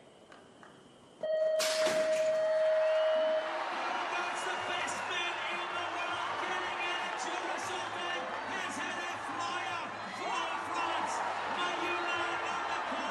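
A BMX start gate: after a hush, the electronic start tone sounds about a second in and holds steady for about two seconds, and the gate drops with a sharp clang as it begins. The riders are released, and a crowd cheers loudly from then on.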